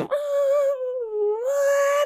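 A man's voice imitating a racing motorcycle engine held at full throttle. It is one long, steady engine note that dips in pitch about a second in and then climbs back. The dip mimics the only note change on the flat-out bike: the tyres loading up through the corner.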